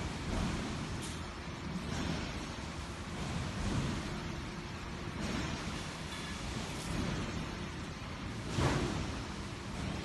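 Running hexagonal wire mesh (gabion) machinery in a factory hall: a steady mechanical noise that swells about every second and a half.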